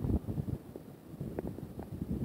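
Wind buffeting a phone's microphone in uneven gusts, a low rumble that rises and falls.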